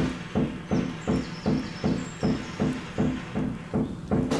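Drums of a drum kit struck with sticks in a steady, even pulse of low, pitched strokes, about three a second. Faint high ringing tones sound briefly over the middle.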